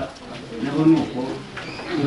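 A person speaking: only speech.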